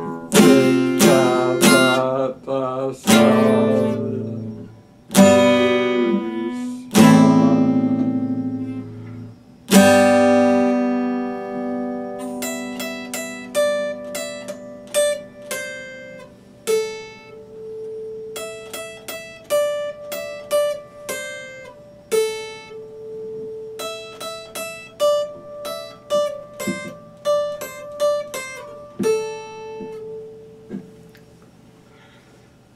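Acoustic guitar played solo: loud strummed chords left to ring over the first ten seconds or so, then quieter picked single notes in a quick, even pattern for the rest.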